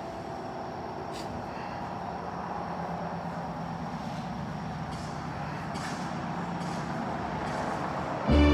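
Steady low rumble and hiss of background noise, with a few faint clicks.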